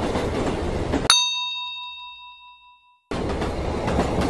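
Steady rumble of a moving metro train that cuts off abruptly about a second in, replaced by a sharp, bright ding with several ringing tones that fades away over about two seconds; the train rumble cuts back in near the end.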